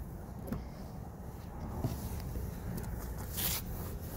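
Handling noise: a sleeve rustling and scraping close to the microphone over a low wind rumble, with a few faint clicks and a brief louder rustle about three and a half seconds in.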